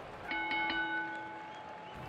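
A metal bell struck three times in quick succession, ringing out and fading over about a second.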